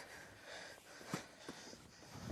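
Quiet room tone with faint breathy sounds, as of suppressed laughter, and two short soft taps about a second and a second and a half in.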